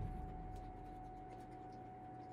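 Faint chewing and small mouth clicks from a man eating a burger, with a steady faint hum underneath.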